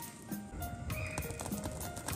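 Background music: a light tune of held notes over an even ticking beat, about four ticks a second.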